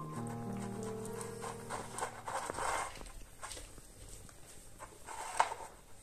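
Background music that ends about halfway through, then a puppy eating from a plastic bowl: irregular wet chewing and lapping sounds, with one sharp click near the end.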